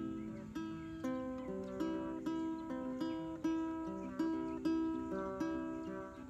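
Small-bodied acoustic guitar playing an instrumental break between sung verses: picked notes and chords in a steady rhythm, a little over two a second.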